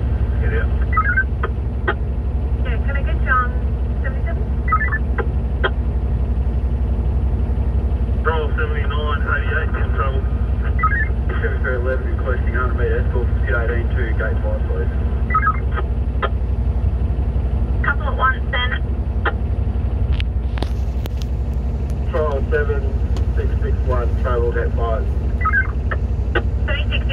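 Cat D11T bulldozer's diesel engine idling steadily, a low drone heard inside the cab while the machine is parked. Intermittent two-way radio chatter sounds over it.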